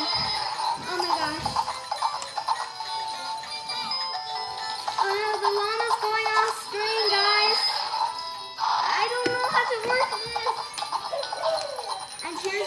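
Several battery-operated Christmas plush toys, among them a walking plush pony, playing their recorded songs at the same time: overlapping singing and music with jingle bells.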